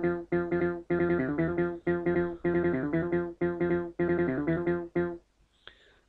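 RubberDuck software bass synthesizer, a TB-303-style emulation, playing its step-sequenced bassline: a short pattern of pitched notes repeating in a steady rhythm, stopping about five seconds in.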